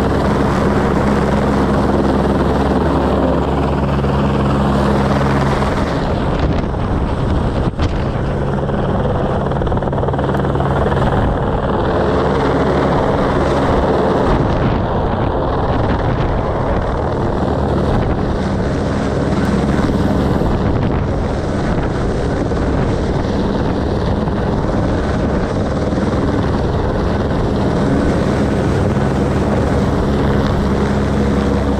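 Airbus H125 helicopter hovering with a powerline pole slung beneath it on a long line: main rotor and single turboshaft engine running loud and steady.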